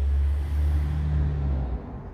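A motor vehicle passing by: a steady low engine hum with a rushing noise that swells and then drops away near the end.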